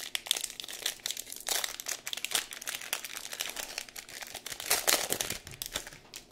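Crinkling and rustling of a trading-card pack's plastic wrapper being handled, irregular throughout, with a louder stretch of crinkles about five seconds in.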